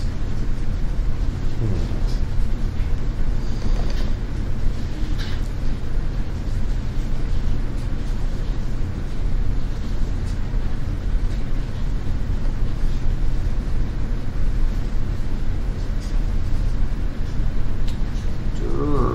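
A steady low mechanical rumble with a few faint clicks scattered through it.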